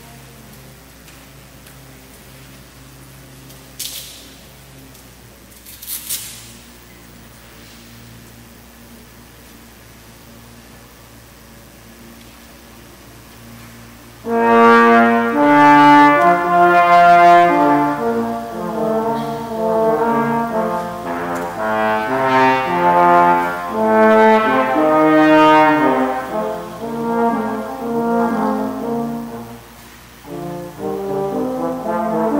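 Trombone duet: for the first dozen seconds only room noise with two brief noises, then about 14 seconds in two trombones start playing together, with note-by-note moving lines in two voices.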